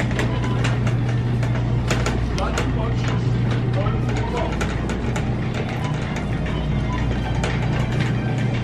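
Shopping cart rattling with frequent small clicks as it is pushed through a supermarket, over a steady low hum of store ambience, with faint background music and chatter.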